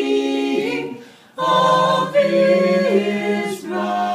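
A mixed vocal quartet of two men and two women singing a Christmas carol a cappella in harmony, holding sustained chords, with a short breath pause about a second in.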